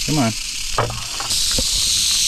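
Rattlesnake rattling its tail in warning: a steady, high buzz that gets louder about halfway through.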